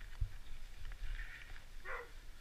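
Close breathing in soft, regularly spaced puffs, with a low knock just after the start and a brief sharper sound near the end.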